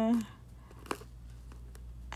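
Quiet room with a low steady hum and one small, sharp click about a second in, a handling sound from the nail-art tools.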